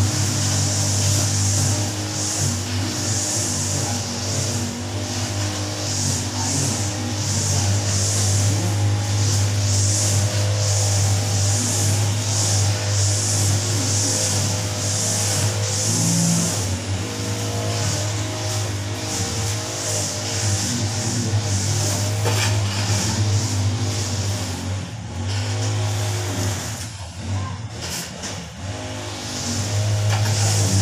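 Background music with a steady beat over a constant low hum.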